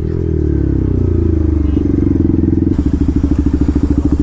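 Single-cylinder 200 cc sport motorcycle engine dropping in revs as the bike slows to a stop, then idling with an even pulsing beat.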